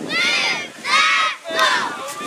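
Children shouting and cheering: three loud, high-pitched yells in quick succession, over crowd noise.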